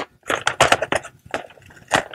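Scissors cutting through wrapping paper: a quick, irregular series of crisp snips.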